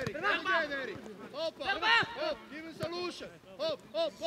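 Men shouting short calls and encouragement during a football passing drill, brief words in quick succession from more than one voice.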